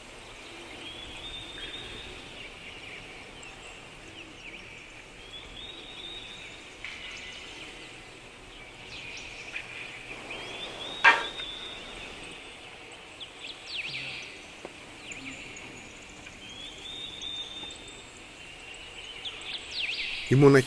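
Outdoor ambience with birds calling: a short, high-pitched call repeated about every five seconds, with scattered brief chirps between. A single sharp click about halfway through is the loudest sound.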